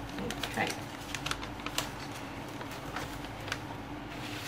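White paper gift bag being handled and opened by hand: irregular light crinkles and small ticks of paper.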